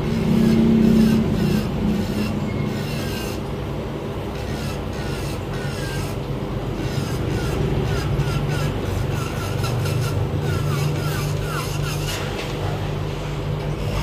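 Electric nail drill (e-file) running with its bit against a fingernail, a steady motor hum with a light rasping as it files the nail.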